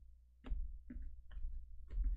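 Tarot card decks handled on a cloth-covered table: about four short taps and clicks as the decks are set down and picked up, over low handling rumble.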